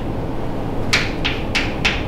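Chalk writing on a chalkboard: about five short, quick strokes in the second half, over a steady low room hum.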